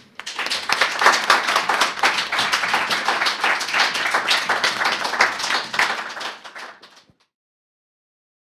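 Audience applauding, a dense patter of many hands that starts right away and dies out about seven seconds in.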